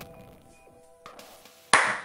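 Faint background music, then near the end a sudden loud burst of noise that dies away within a few tenths of a second: an edited transition sound effect at a cut.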